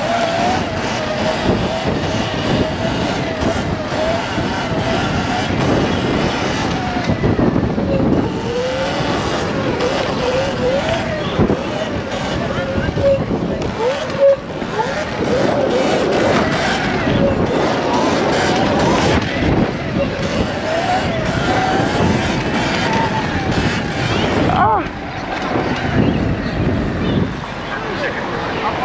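Wind rushing over the microphone and the whine of a Sur-Ron electric dirt bike's motor. The whine wavers up and down in pitch as the bike speeds up and slows, with a quick rise in pitch near the end.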